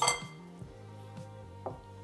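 A single light clink of chopsticks against a glass bowl, ringing briefly, then a faint click, over soft background music.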